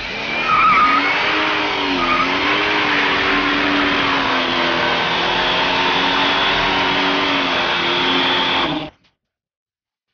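Car doing a burnout: the engine is held at high revs, its pitch wavering, over the hiss and squeal of spinning tyres. The sound stops suddenly near the end.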